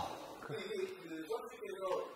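Quiet speech: a man's drawn-out 'ah' of realisation, his pitch wavering.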